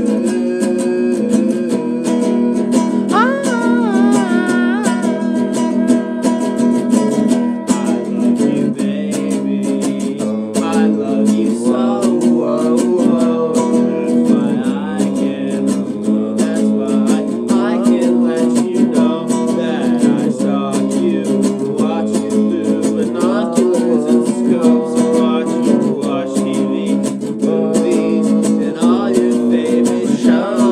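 Acoustic demo song: steady strumming on an acoustic string instrument, with a wavering melody line over it.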